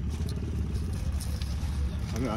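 Low, steady rumble of a running car heard from inside the cabin, with a few faint clicks.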